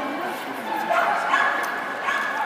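A dog yipping in high-pitched, drawn-out cries, getting louder about a second in.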